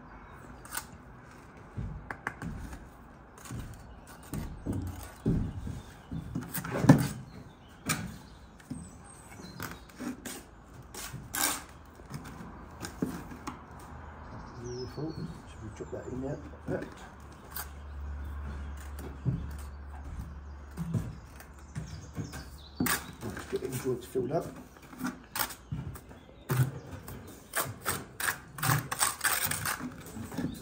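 Steel trowel working mortar and bedding bricks: irregular sharp taps and knocks of the trowel and bricks, with scraping of mortar, throughout. A low steady hum runs underneath for several seconds in the middle.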